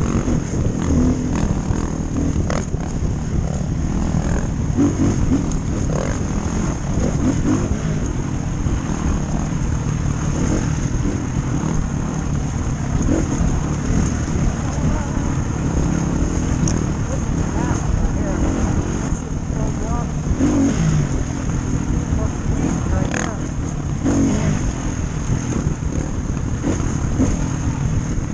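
Dirt bike engine running hard on single-track, its revs rising and falling with throttle and gear changes, with wind rushing over the helmet camera's microphone.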